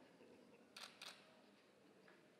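Two quick camera shutter clicks about a quarter of a second apart, against quiet room tone.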